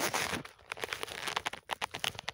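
Phone-handling noise: a brief rustle, then a rapid, irregular run of small clicks and scrapes as the recording phone is grabbed and moved.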